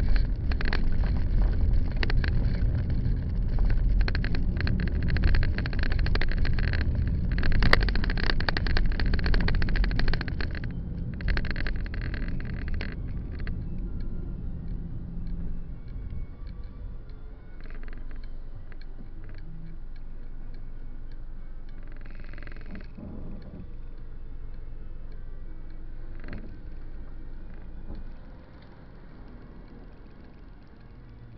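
Car driving on city streets, heard from inside the cabin: a low road rumble with frequent rattles and knocks. After about 13 seconds it quietens as the car slows to a stop behind a van, leaving a low steady hum that drops further near the end.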